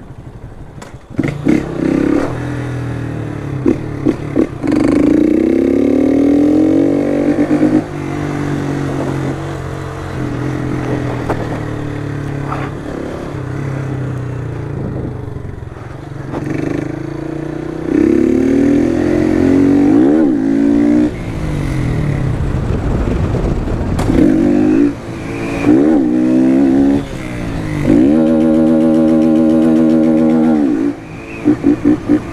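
Motorcycle engine pulling hard several times, its pitch rising through each run and dropping between them. Through the middle stretch it runs at a lower, steadier pitch.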